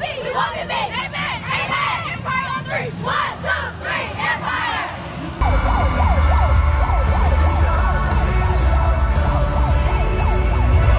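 Several girls' high voices shouting and chanting together, overlapping. About five seconds in, a sudden cut to loud cheer routine music with heavy bass and rising-and-falling siren-like sweeps.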